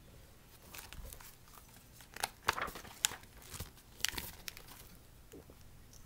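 A paperback picture book being handled, its pages rustling and crinkling, with a scattering of short sharp clicks and taps, busiest between about one and four and a half seconds in.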